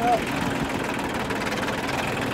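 Tractor engine running steadily while the front loader's hydraulics lift the bucket.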